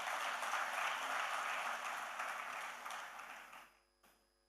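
Audience applauding, many hands clapping steadily, then dying away about three and a half seconds in.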